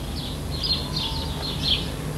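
Birds twittering in the background, short high chirps coming in clusters several times a second, over a low steady hum.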